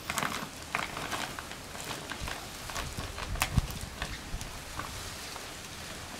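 Heavy plastic bag being cut and pulled open by hand: crinkling and rustling plastic with scattered clicks, and one sharp knock about three and a half seconds in.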